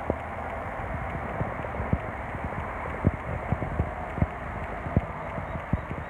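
Footsteps on concrete, uneven knocks about one or two a second, over a steady background hiss.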